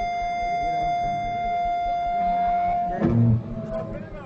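Electric guitar feedback through the amplifier: a single steady high tone held for about three seconds, then cut off. A short, loud, low note follows right after.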